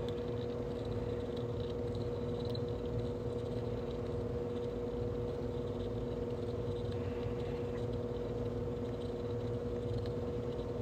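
A steady mechanical hum with one constant tone, under faint scraping as a hand deburring blade shaves the rough inside edge of a hole punched in a copper quarter.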